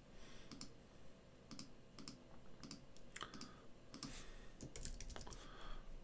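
Faint, irregular clicks of a computer keyboard being typed on, a short word entered key by key.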